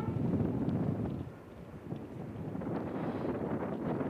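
Wind buffeting an outdoor microphone: a steady low noise that dips for a moment about a second and a half in, then builds again.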